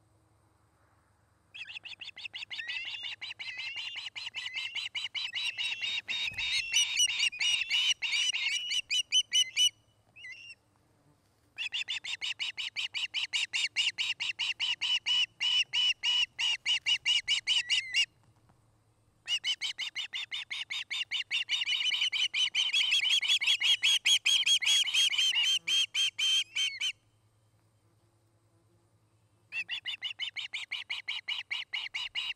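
Ospreys calling in long, rapid series of high whistled chirps, several notes a second, in three bouts with short pauses between them. The first bout grows louder as it goes.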